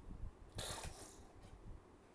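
A toy gun being handled, with one short hissing whoosh about half a second long, starting about half a second in.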